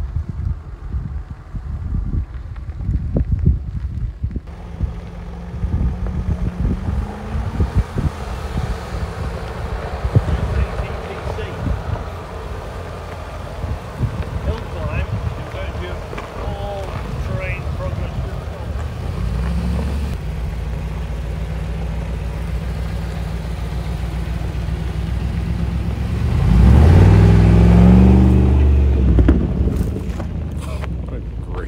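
Land Rover SUV engines working up a gravel hill track at low speed, with a steady engine note. Near the end one engine revs up harder, rising in pitch for a few seconds. Wind buffets the microphone in the first few seconds.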